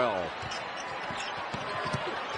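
A basketball being dribbled on a hardwood court, a run of short dull bounces, over the steady murmur of an arena crowd.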